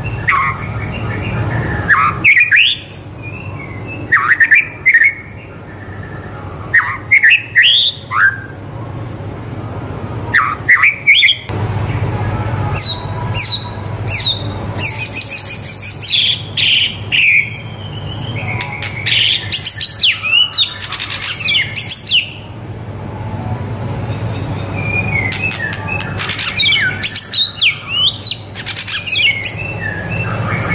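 A white-rumped shama (murai batu) in full song: loud, varied phrases of quick rising and falling whistles, coming in bursts a few seconds apart with a longer, busier run through the middle. A steady low hum runs underneath.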